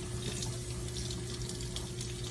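Tap water running steadily from a faucet into a sink, falling onto a wet puppy held under the stream, with a steady low hum underneath.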